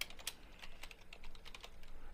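Faint typing on a computer keyboard: a quick, uneven run of separate key presses.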